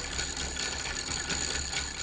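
Wooden gear train and saw-toothed ratchet date wheel of a hand-operated wooden mechanical calendar clicking quickly and steadily as the mechanism turns, advancing the calendar by one day.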